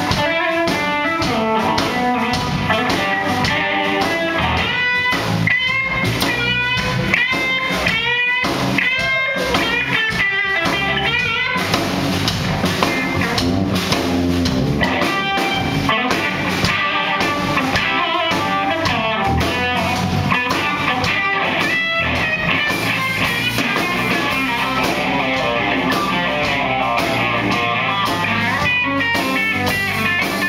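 Live rock band playing an instrumental passage: an electric guitar plays a lead line of repeated bent notes over electric bass and drum kit. About eleven seconds in, the guitar line gives way to a denser, more even part.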